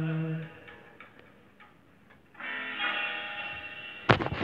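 A man's singing voice holding the final note, with no backing, cutting off about half a second in. Then come a few faint clicks and, from about halfway, a quieter steady pitched tone.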